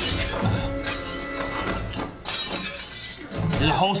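Crockery shattering in a TV fight scene, with several crashes over background score music.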